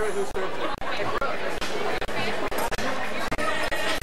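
Guests talking over one another in a large room, an indistinct chatter with no single clear voice.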